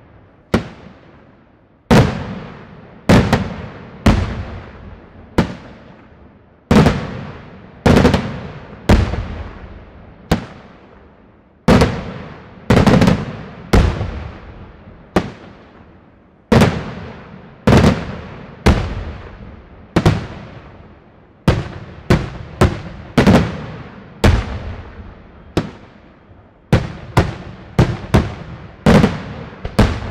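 Daytime fireworks display: aerial shells bursting in loud bangs one after another, about one or two a second, each followed by a rolling echo. The bangs come closer together in the second half.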